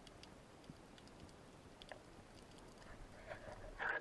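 Faint underwater ambience with sparse, scattered clicks and crackle. Near the end come louder rushing bursts of water moving past the camera as the diver turns upward toward the surface.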